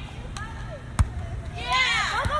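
A ball, likely a volleyball, hitting with a single sharp thump about a second in, over faint voices.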